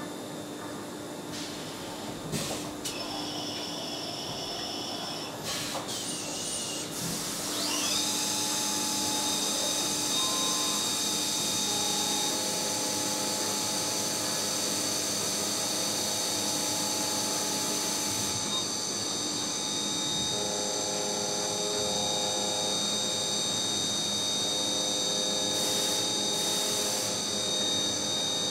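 CNC vertical machining centre milling a billet aluminium inlet manifold. The spindle whine rises in pitch about eight seconds in, then holds a steady high whine with cutting noise while the end mill cuts the aluminium.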